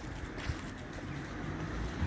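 Low, steady hum of distant road traffic, with a faint low engine tone and a soft click about half a second in.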